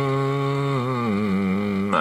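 A man humming one long, low note that drops a step in pitch about halfway through.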